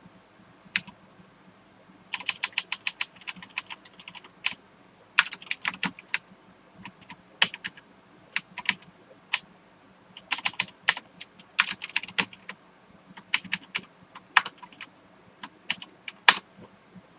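Computer keyboard typing: runs of quick keystrokes in short bursts with brief pauses between, as a line of code is edited.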